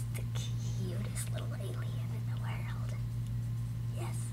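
A girl whispering or speaking very softly in short fragments, over a steady low electrical hum that is the loudest thing throughout.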